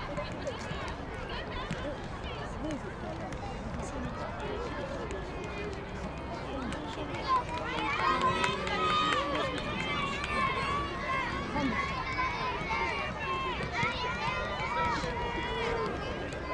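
Indistinct chatter of several voices from spectators around an outdoor training pitch, getting louder about halfway through. A single sharp thump sounds just before the voices rise, with faint scattered knocks throughout.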